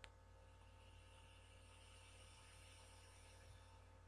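A click, then a faint hiss lasting about three and a half seconds from a sub-ohm vape atomiser being fired on a 0.25-ohm dual-coil build at 70 watts, vaporising e-liquid while it is drawn on through the drip tip.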